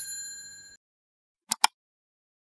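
A bright metallic ding, struck once, whose ringing fades and is cut off sharply under a second in, then two quick clicks about a second and a half in, typical of an edited video-intro sound effect.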